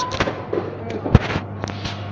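A quick run of sharp clicks and knocks from goods being handled, the loudest a little over a second in, over a steady low hum.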